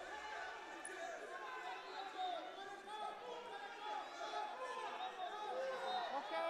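Indistinct chatter of many voices, several people talking at once in the background, with no single voice standing out.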